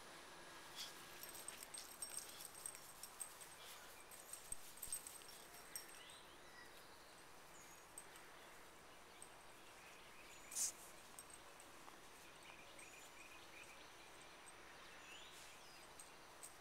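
Near silence: faint steady chirring of crickets, with scattered soft ticks in the first six seconds and one short sniff from a Boston terrier nosing in the grass about ten and a half seconds in.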